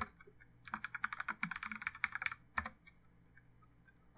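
Computer keyboard typing: a fast run of keystrokes lasting about a second and a half, followed by a single keystroke.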